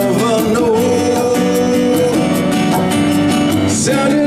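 Live acoustic band playing a pop song: acoustic guitar, keyboard and conga drums on a steady beat, with a long held note in the first half.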